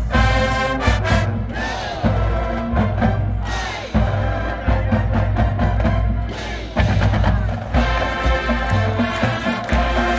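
Marching band playing at full volume: massed brass and woodwind chords over bass drums and percussion, with sharp accented hits every second or two.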